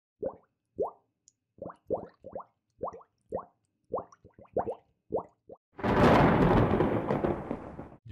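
Opening sound effect: about a dozen short plops, each rising quickly in pitch, spaced irregularly over five seconds. Then a loud rush of noise starts suddenly and fades away over about two seconds.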